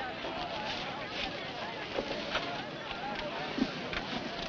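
Crowd of people talking over one another: a steady murmur of many voices, none standing out, with a couple of faint knocks about two seconds in.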